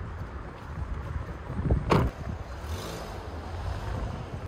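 Car door slammed shut about two seconds in, over a steady rumble of wind on the microphone; a faint low engine hum follows as the sedan pulls away.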